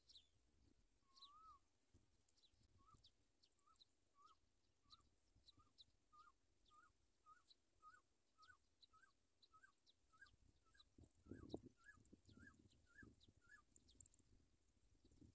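Faint bird chirping: a long series of short, hooked chirps, under two a second at first and quickening toward the end, with fainter high ticks among them. A low bump about eleven seconds in.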